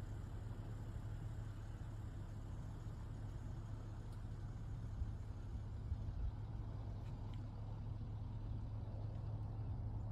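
Steady low outdoor rumble with no distinct events, the ambient sound track of footage filmed outdoors over a frozen river.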